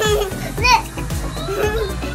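Young children's voices with a high-pitched squeal about two-thirds of a second in, over music.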